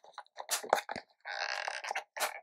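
Close handling noises as the last tarantula is released into the enclosure: a scatter of small dry clicks and crackles, then a brief rustling scrape about a second and a half in.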